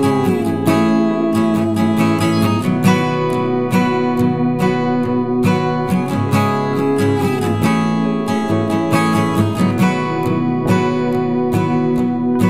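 Background music: acoustic guitar strumming chords at a steady rhythm.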